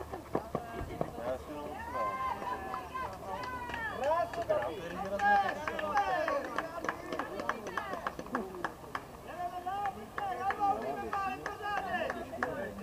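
Players' voices calling and talking on a softball field, none of it clear enough to make out as words, with scattered short sharp clicks.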